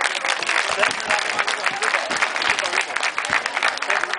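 Audience applauding, a dense patter of many hands clapping, with voices underneath.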